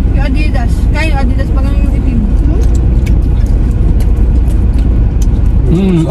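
Steady low rumble of a car heard from inside the cabin, with brief snatches of voices and small scattered clicks over it.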